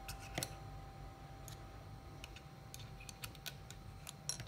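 Scattered light metallic clicks and ticks, about eight over a few seconds, as small metal rings and parts are fitted by hand onto the axle of a reed tip profiling machine.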